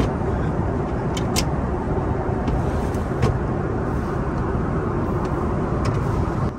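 Steady in-flight cabin noise aboard an Airbus A330-900neo: an even rumble of engines and airflow, with a few faint clicks.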